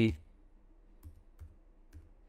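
A few faint, separate clicks of computer keyboard keys as a short word is typed.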